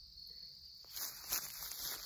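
Insects chirring steadily in the background. About halfway through, footsteps and rustling on dry grass and leaves come in as a person shifts and turns.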